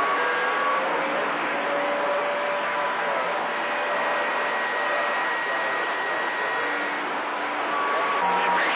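CB radio receiving on channel 28 with no station coming through: steady static hiss, with a few faint steady whistle tones in it.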